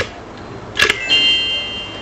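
Sharp clicks, the last a double click a little before one second in, followed by a ringing ding of several held high tones that fades away near the end.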